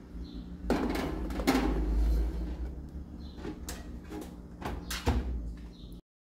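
Aluminium baking pan being put on a metal oven rack and the oven door shut: a series of knocks and clatters over a low rumble.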